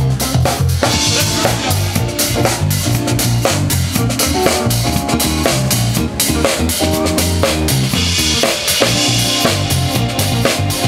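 Live band playing a groove: drum kit with snare, bass drum and rimshots over a moving bass line, with electric guitar and keyboard. Cymbals wash brighter about a second in and again near the end.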